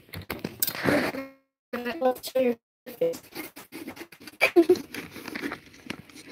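A kitchen knife sawing and tearing into the synthetic cover of a soccer ball, heard as scratchy clicks under children's voices. The sound cuts out completely twice for a moment, a live-stream audio glitch.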